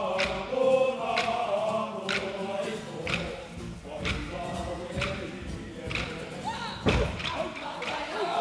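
A kapa haka group chanting in unison, with sharp thumps keeping time about once a second; the strongest thump comes near the end.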